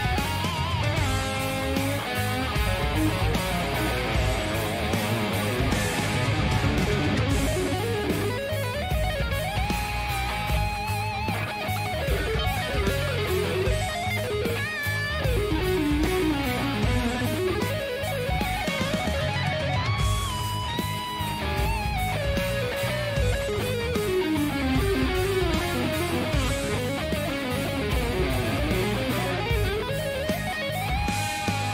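Electric guitar played along with a recorded song track. The guitar carries melodic lead lines with bends and vibrato over a steady beat.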